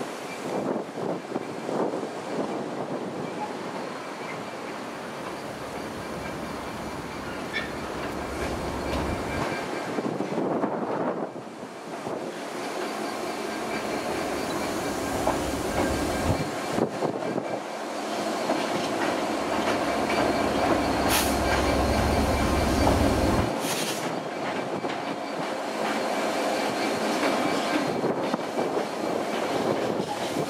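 A Freightliner Class 66 diesel locomotive, with its two-stroke V12 engine running, hauls an intermodal container train past. It grows slowly louder as it nears, with wheels clicking over the pointwork and a thin, steady wheel squeal.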